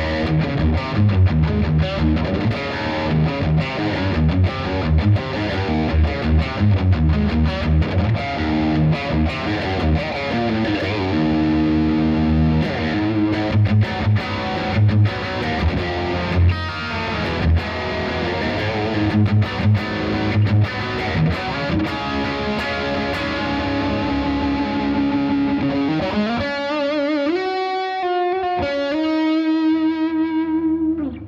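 Electric guitar played through a Boss Katana amp's high-gain lead channel, mids pushed up, with delay and reverb: a distorted lead line of quick runs, thinning near the end into a few long sustained notes.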